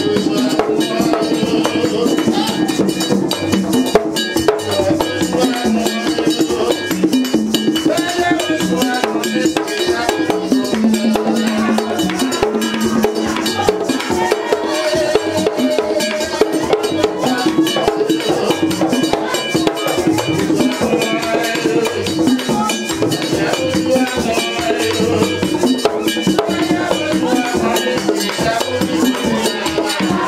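Haitian Vodou ceremonial music played live: a steady, dense rhythm of drums with a metal bell and rattle, and voices singing over it.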